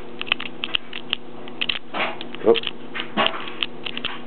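Metal lock pick clicking and scraping against the pin tumblers inside a Master Lock 101 interchangeable-core padlock while it is being picked: many small, irregular clicks.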